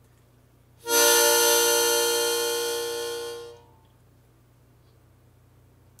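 Harmonica playing one long held note that starts about a second in, loudest at its onset and slowly fading until it stops at about three and a half seconds.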